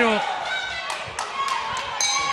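A few short, sharp knocks at uneven spacing over faint background voices in a boxing arena.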